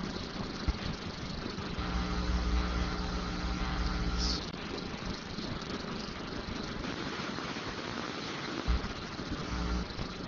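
Steady room hum of ventilation in a meeting room. A pitched drone with a low rumble joins it from about two seconds in, for a couple of seconds.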